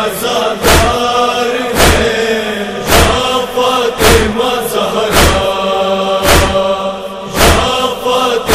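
Nauha backing: a male chorus chanting in long held notes over a heavy, even thump about once a second, the matam beat of Shia mourning recitation.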